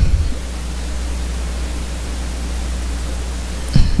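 Steady hiss with a constant low hum underneath, the recording's background noise, with no distinct event; a short low knock near the end.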